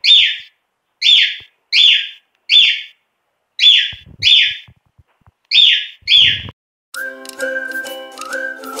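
A bird calling with about eight loud whistled notes, often in pairs, each sliding down in pitch. Music starts near the end.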